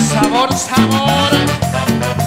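Live Latin dance-band music in an instrumental passage: a steady, rhythmic bass line and percussion under a melodic lead that runs upward in pitch about half a second in.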